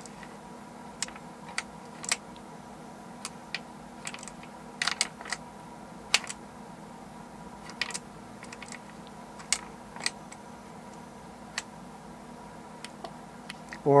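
Glass marbles clicking against each other and the wooden parts of a hand-turned wooden rotary marble lift: scattered sharp clicks at irregular intervals, some in quick clusters, over a faint steady hum.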